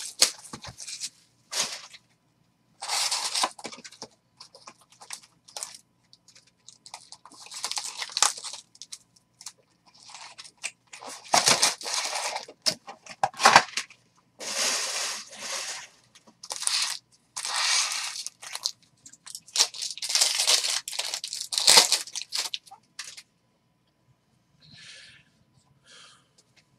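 Plastic-foil wrappers of baseball card packs being torn open and crumpled by hand: a run of short crinkling, tearing bursts, each up to about a second and a half long, with brief pauses between them, dying away near the end.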